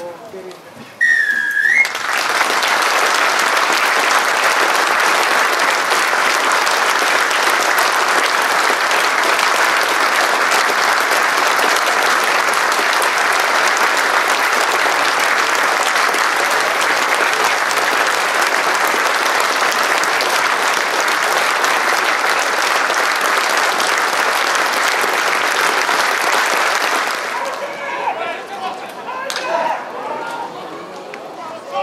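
A referee's whistle is blown once, signalling the start of a minute's applause, and the crowd at once breaks into steady applause that holds for about 25 seconds before dying away near the end.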